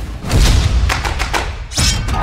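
Deep thuds over a low rumble, with a rushing swish just before the end.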